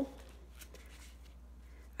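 Faint rustling and a few light ticks of gloved hands pressing and smoothing epoxy clay onto a vinyl doll head, over a steady low hum.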